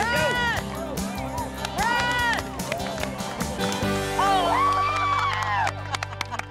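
Background music under high-pitched shouts and cheering from a small crowd of spectators urging a runner on, with one long drawn-out call near the end.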